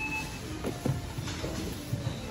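Grocery-store background noise: a steady hum with faint, indistinct voices, and a short high beep at the very start.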